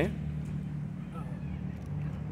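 Steady low hum of urban background noise, with a faint voice underneath.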